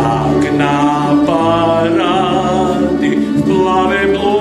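Mixed choir singing held notes in several parts, the chord changing about once a second.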